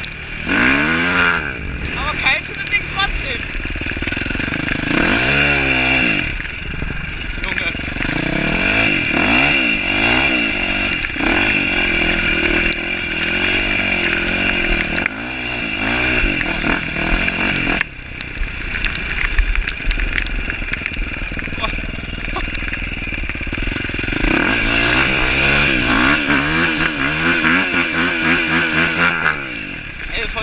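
KTM 450 SX-F single-cylinder four-stroke motocross engine under way, revving up and dropping back again and again as the rider works the throttle and gears. Steady wind rush over the camera sits under the engine.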